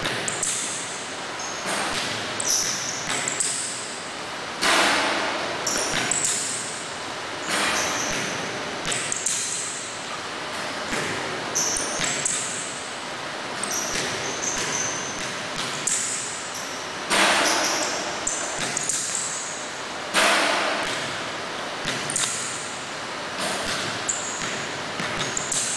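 Basketball bouncing on a hardwood gym floor during a dribbling and pull-up jump-shot drill, each bounce echoing around the large gym. Several louder bangs with a ringing tail come at intervals of a few seconds.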